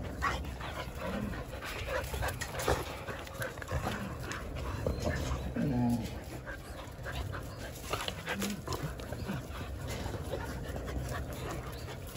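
Jindo dogs playing roughly on dirt ground: scuffling, sniffing and panting, with a couple of short, low whines.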